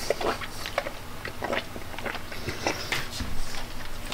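A person chewing a mouthful of chicken salad with pineapple and strawberry close to the microphone: a run of short, irregular clicks and crackles.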